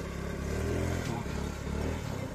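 Gearless scooter's engine running under throttle while the rider holds a wheelie, its pitch rising and falling slightly as the throttle is worked.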